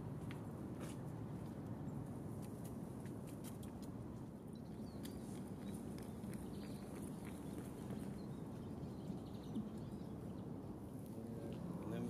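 Steady low outdoor background rumble with faint, scattered small ticks; no bird calls are heard.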